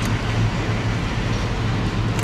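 Steady low hum with an even hiss of moving air from supermarket refrigeration, the background of an open chilled display case.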